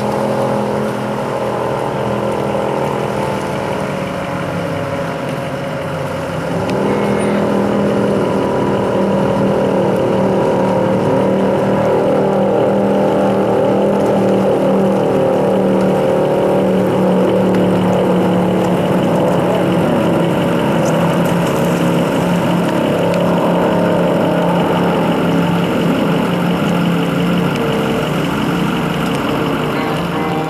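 Offshore racing powerboat running flat out, a loud, steady engine note that dips slightly and then grows louder about six to seven seconds in, holding high to the end.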